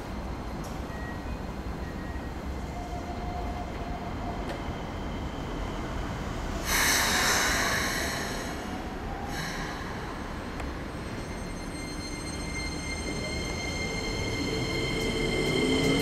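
Keikyu 2100 series electric train starting away from a station stop: a loud hiss lasting a couple of seconds near the middle, then the traction motors' whine rising in pitch and getting louder as it accelerates near the end.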